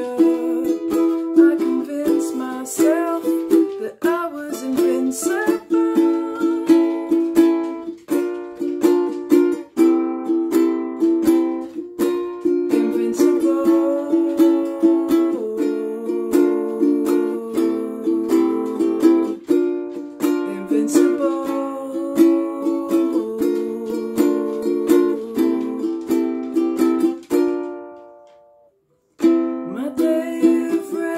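Solo ukulele played with fast, rhythmic picking and strumming through a chord sequence in an instrumental passage. Near the end the playing dies away to a brief silence, then starts again.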